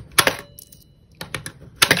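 Pennies pushed one at a time into the slot of a digital coin-counting jar, each snapping through the counter mechanism with a sharp click and dropping onto the coins below. A loud click comes just after the start, with a brief faint ring after it, then a few small ticks about halfway and two sharp clicks near the end.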